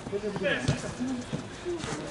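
Voices calling out across a small football pitch, with a couple of sharp thuds of the ball being kicked on artificial turf, about two-thirds of a second in and again near the end.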